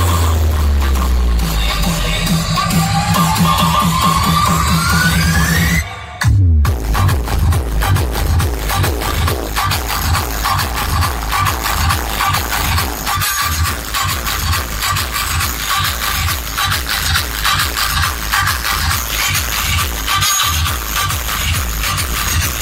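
Electronic dance music played very loud through a large DJ speaker wall of stacked bass cabinets. Heavy bass and a rising sweep build for about six seconds, the sound cuts out for a moment, then the beat drops into a fast, steady, bass-heavy rhythm.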